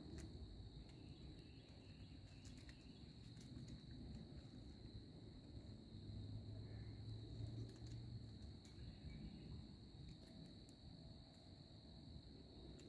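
Near silence: a faint steady high-pitched hum and a few light clicks and rustles from hands working at mushrooms on tree bark.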